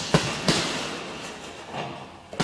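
Gloved punches landing on a hanging heavy punch bag: two sharp hits about a third of a second apart near the start, then a lighter knock near the end.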